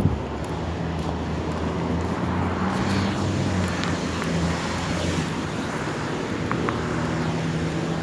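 Road traffic noise: a steady low hum of passing vehicles, with a short knock right at the start and a few faint clicks later on.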